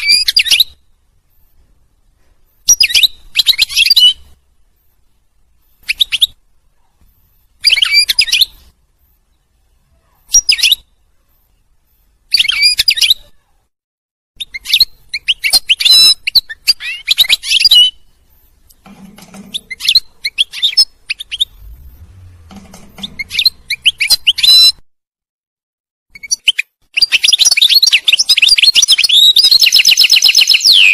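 European goldfinch song: phrases of rapid twittering and trills, at first about a second long with pauses between, then longer. Near the end comes an unbroken stretch of several seconds.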